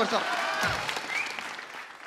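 Studio audience applauding, fading away over about two seconds.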